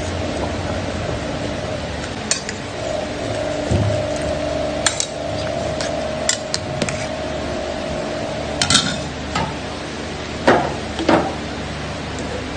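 Pork leg boiling in a stainless steel pot on a gas stove, with a steady hiss from the boil. A metal ladle clinks against the pot several times, loudest twice near the end.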